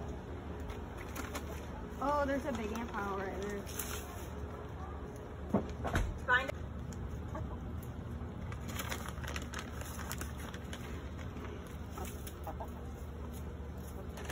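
Hens clucking while they peck feed at close range, with a few short pitched calls and a single low knock about six seconds in.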